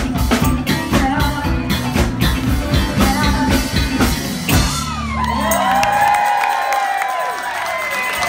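Live band with drum kit, bass and keyboards playing a song to its finish about five seconds in, then the crowd cheering and whooping.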